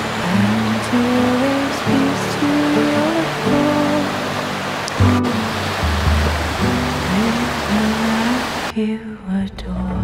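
Shallow creek water rushing over rocks, heard as a steady hiss under slow background music. The water sound cuts off suddenly about nine seconds in, leaving only the music.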